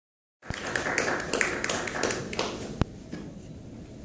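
A small audience applauding, with the claps starting about half a second in and dying away just before three seconds in, ending on one sharp click. Quiet room tone follows.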